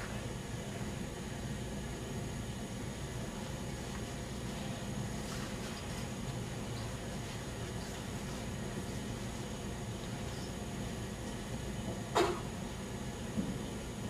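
Steady low room hum, the background of a darkened lecture room, with a brief sharp noise about two seconds before the end.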